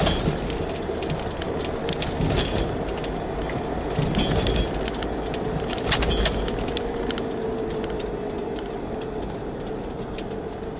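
Steady road and engine noise of a moving car heard from inside the cabin, with scattered light clicks and rattles.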